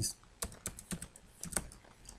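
Computer keyboard typing: a run of separate, irregularly spaced keystrokes.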